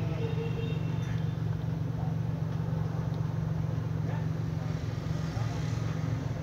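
Steady low rumble of a running vehicle, even throughout, with faint voices in the background.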